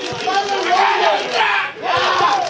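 Football spectators shouting and yelling together, many voices overlapping, as an attack reaches the goalmouth. The shouting drops briefly near the end, then picks up again.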